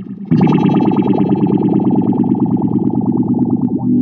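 Electric guitar with some drive, played through an Electra 875 Phase Shifter pedal into a Mesa/Boogie Mark V:25 amp: a fast, evenly picked rhythm figure after a brief break at the start, ending on a ringing chord near the end.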